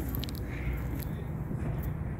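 Outdoor background noise with a steady low rumble and a few small clicks in the first half-second.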